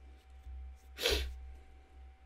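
A man's short, breathy sigh about a second in.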